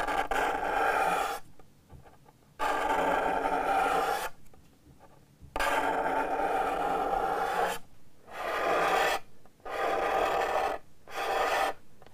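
Small sharpened hand scraper scraping a resin- and superglue-impregnated lacquer finish off a guitar top, in about six long rasping strokes of a second or two each with short pauses between them.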